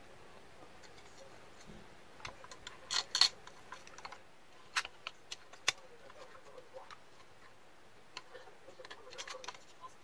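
Sharp clicks and taps of small circuit-board and plastic parts being handled and set into a router's housing. The loudest is a pair of clicks about three seconds in, followed by a few single clicks around five seconds.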